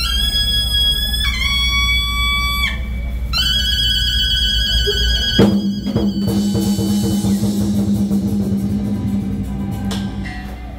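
A solo horn plays a slow melody of long held notes over a low steady keyboard drone. About five seconds in, the drums and cymbals crash in together with a low sustained tone, and cymbals keep washing under the horn's last held high note.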